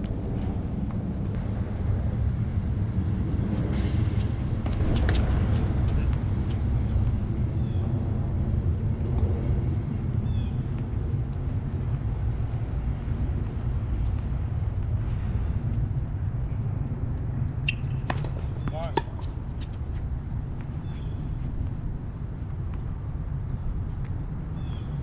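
Tennis doubles play: a few sharp racket-on-ball hits and faint players' voices over a steady low rumble.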